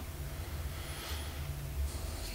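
A pause between sentences: room tone of a press room, a steady low hum under faint hiss.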